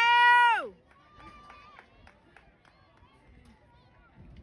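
A woman cheering, holding one long loud shout that falls in pitch and breaks off under a second in; after it, faint voices of spectators in the distance.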